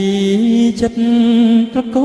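Khmer rangkasal song: a melody sung in long held notes that step up and down in pitch, with the drums dropped out.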